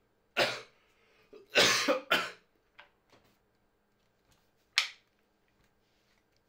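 A man coughing four times: two coughs close together about two seconds in are the loudest, and the last is a short one near the end.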